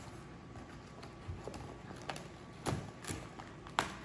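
A paper toy blind-box bag on a cardboard base being handled and torn open. It rustles, with several sharp clicks and taps in the second half.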